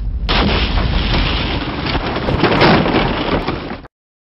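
Animation sound effect of a wooden floor being smashed apart from below: a loud, dense rumble and crackle of breaking boards that starts about a third of a second in and cuts off abruptly just before the end.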